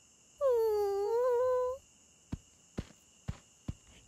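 A cartoon dinosaur character's wordless, downcast moan lasting about a second and a half, dipping in pitch and then rising slightly, followed by four soft taps about half a second apart.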